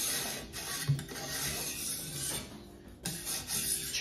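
Rubbing and scraping of metal parts as the guide rod and arm of a TS Prof fixed-angle knife sharpener are moved and adjusted by hand, with a digital angle gauge sitting on the rod. The scratchy handling noise dies away a little past halfway through.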